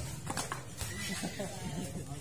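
Several people's voices calling out and chattering during a volleyball rally, overlapping one another, with a couple of faint knocks.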